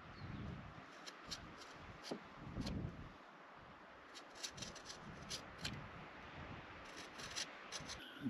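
A knife cutting through a three-strand rope: quiet rubbing strokes with scattered small clicks.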